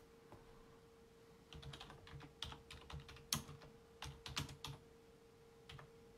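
Faint typing on a computer keyboard: a quick run of key clicks for about three seconds, then one more keystroke near the end, over a steady faint hum.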